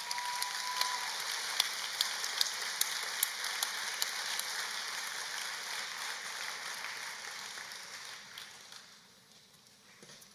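Audience applauding, with a few sharper individual claps standing out, steady for several seconds and then dying away near the end. A brief steady high tone sounds in the first second.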